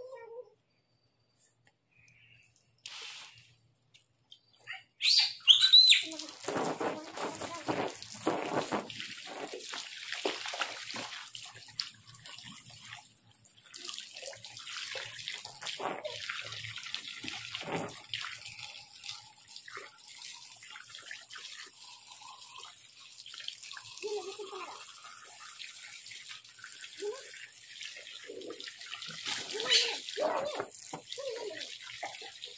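Water splashing and sloshing in a small inflatable paddling pool, starting about five seconds in after a brief high squeal and going on unevenly to the end, with a few short bits of a child's voice.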